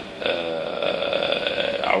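A man's voice holding one long, steady hesitation sound, a drawn-out vowel lasting about a second and a half.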